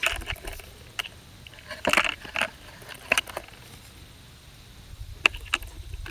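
Brass .380 cartridges clicking and rattling against each other and a plastic ammunition tray as they are handled, in scattered short bursts of light clicks.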